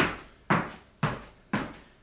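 Landings of double-leg pogo hops on rubber gym flooring: four sharp foot strikes, about two a second, each fading quickly.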